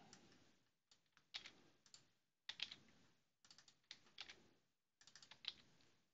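Faint computer keyboard typing: short bursts of a few keystroke clicks each, with brief pauses between them.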